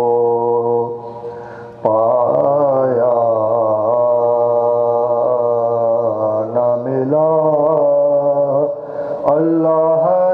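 Male voices chanting soz, a mournful Urdu elegy sung without instruments in long held notes. The chant drops away briefly twice, about a second in and near the end.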